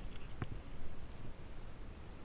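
Spinning fishing reel being cranked to bring in line, with a couple of sharp clicks in the first half second, then only a faint, steady background.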